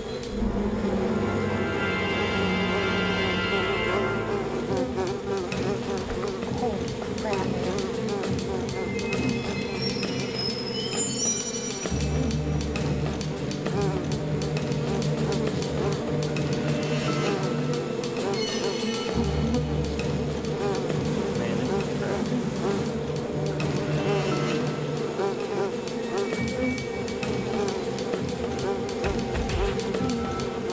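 Steady buzzing of a dense swarm of honeybees, under a dramatic music score whose low bass notes change every several seconds.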